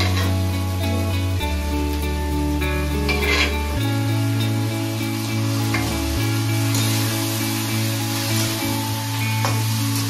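Background music with sustained notes, over drumstick pieces and mashed dal sizzling in a steel kadai as a metal spatula stirs and scrapes them.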